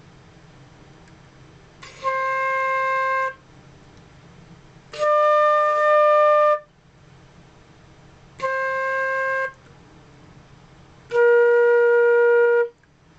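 Flute playing four long held notes with pauses between them: C, up to D, back to C, then down to B-flat.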